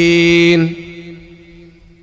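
An amplified man's voice holding the last note of a chanted Arabic Quran recitation for about half a second on one steady pitch. The note then fades away over about a second.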